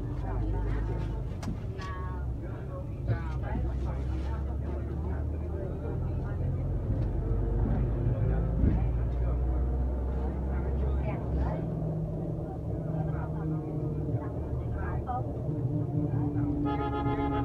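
Inside a moving bus: a steady low engine and road rumble in the cabin, with faint voices in the background.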